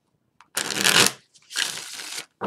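A tarot deck being shuffled by hand, split into two halves. Two bursts of card-shuffling rustle, the first about half a second in and the second about a second and a half in.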